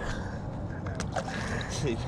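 Steady outdoor noise of wind and water around a small aluminium boat, with a single sharp tick about a second in and faint voice traces.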